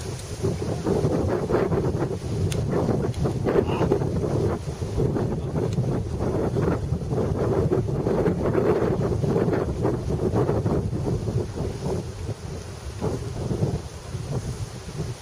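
Wind buffeting the microphone: a loud, low, gusty rushing that eases off a little near the end.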